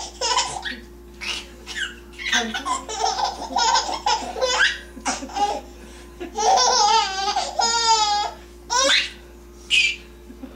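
A baby laughing in repeated bursts, with a longer wavering squeal of laughter about three quarters of the way through.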